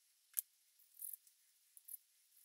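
Faint handling noises from small wooden blocks being picked up and moved on a plastic tray: a sharp click about a third of a second in, a brief rustle about a second in, and two light clicks near the end.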